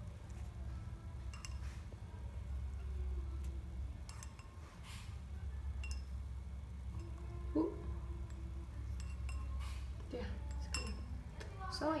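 Plastic forks clinking against drinking glasses and tapping on a plate as wet flowers are lifted out of the tea. The sound is a scatter of light clinks and taps, the sharpest about seven and a half seconds in, over a steady low hum.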